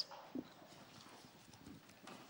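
Near silence: quiet room tone with a few faint knocks and one brief faint sound about half a second in.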